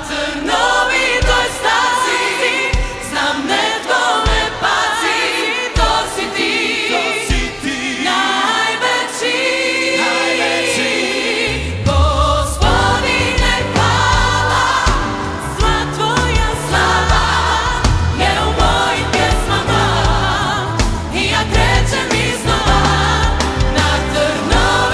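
Gospel choir singing with a live band accompaniment. About halfway through, the accompaniment grows much fuller and deeper as the bass and drums come in.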